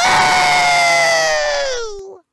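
A high-pitched cartoon character's voice holding one long, loud yell that slides slowly down in pitch and fades out at the end.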